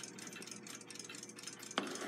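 Faint room hiss, then a single sharp click near the end as a small metal clock assembly, the Westclox alarm spring box, is set down on the bench, followed briefly by light handling noise.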